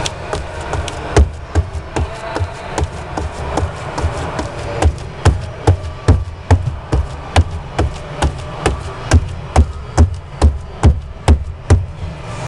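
Rubber-soled sneakers tapping and stomping on a studded rubber floor. The knocks come irregularly at first, then settle into a steady beat of about two to three a second, over the low steady rumble of the vehicle.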